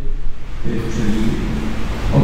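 A low, steady hum, with a person's voice coming in a little over half a second in, picked up by the room's microphone.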